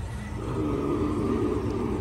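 A steady low rumble of outdoor background noise with no distinct events.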